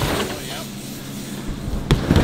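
BMX bike rolling up a wooden ramp, with steady tyre and wind noise and a faint low hum. A single sharp knock comes near the end.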